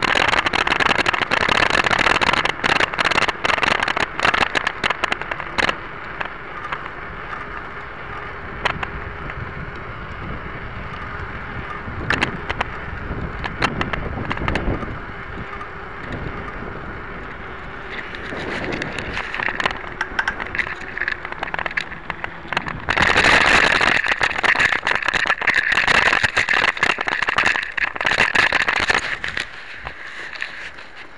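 Steel-framed mountain bike being ridden, heard from a camera mounted on it: rattles and knocks from the frame over a steady rush of tyre noise. Dense knocking in the first few seconds, quieter in the middle, then louder and rougher for the last several seconds as the bike runs onto a grassy track.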